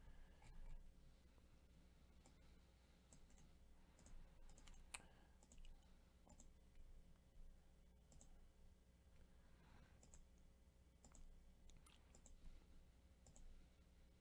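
Near silence with faint, scattered computer mouse clicks over a low steady hum.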